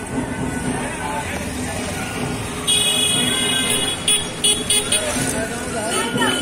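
Crowd chatter and traffic on a busy street. A vehicle horn gives one long toot a little under halfway through, then several short toots in quick succession.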